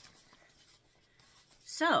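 Faint rustling of a paper sheet and fabric pieces being handled, with a soft click at the start, then a woman's voice saying "So" near the end.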